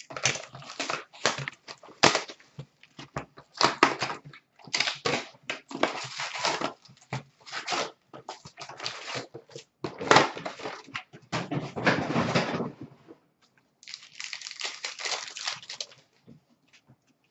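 A cardboard hockey-card hobby box being torn open by hand and its packs pulled out: irregular bursts of tearing, scraping and crinkling. After a short lull, a last stretch of higher, hissing crinkle near the end.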